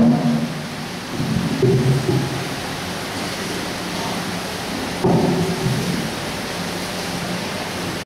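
A low male voice chanting in short, held monotone phrases, three or four stretches about a second each, over a steady hiss-like noise.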